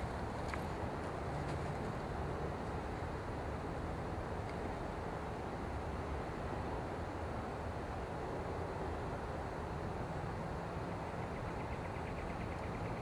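Steady outdoor background noise with a low hum underneath and no distinct events.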